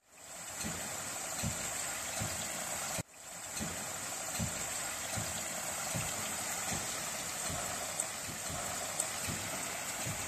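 Water pouring from a row of filter-press outlet taps, many thin streams splashing into a collection tank: a steady splashing hiss. It cuts out briefly about three seconds in and returns.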